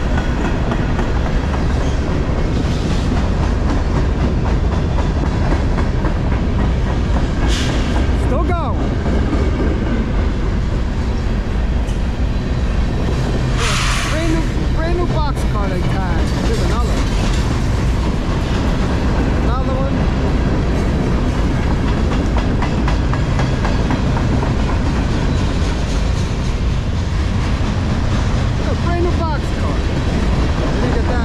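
Freight train cars rolling past close by: a steady rumble and clatter of steel wheels on the rails. Brief wavering wheel squeals come through now and then, with two short hisses about a quarter and halfway through.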